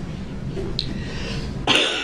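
A person coughing once, sharply, near the end, over room tone with a steady low hum.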